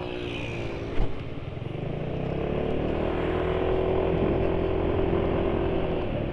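Yamaha automatic scooter's engine running under way, heard from the saddle with wind and road noise. Its note shifts at first, then holds steady and grows louder from about two seconds in as the scooter picks up speed. A single knock comes about a second in.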